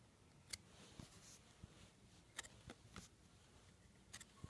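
Near silence broken by a few faint, sharp clicks of hard plastic graded-card slabs being handled and shifted against each other in the hands.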